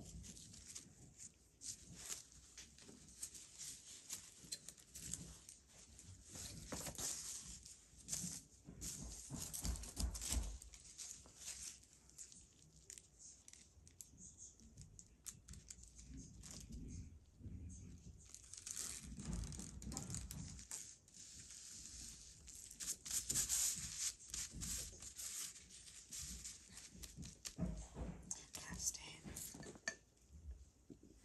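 Tissue paper crinkling, rustling and tearing as gloved hands handle it and smooth it onto a glue-coated board, in short irregular bursts.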